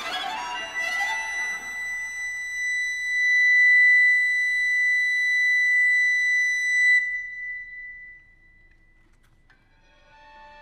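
Wooden recorder holding one long, high, steady note for about six seconds, then fading away to near silence. Bowed strings come in quietly at the very end.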